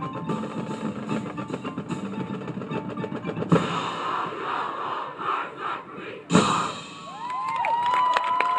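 Marching band of brass and percussion playing, with a loud full-band hit about three and a half seconds in and another about six seconds in. Near the end the crowd in the stands starts cheering.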